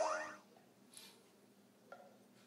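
Electronic soft-tip dart machine's hit sound effect, after a dart scores a 50-point bull. A cluster of falling electronic tones dies away within the first half second, followed by a faint click about a second in and another near the end.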